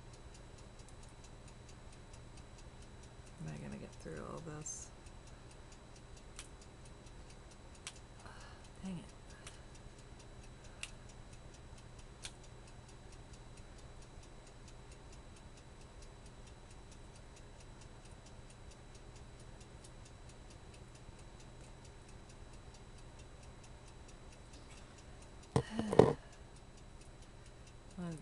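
Faint, steady ticking of a clock in the room, with a few small clicks from scissors and packaging being handled. There is a brief soft vocal murmur about four seconds in and a short, loud vocal sound near the end.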